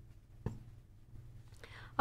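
A quiet pause in a woman's speech: a faint steady low room hum, with one brief soft mouth click about half a second in and a faint intake of breath near the end.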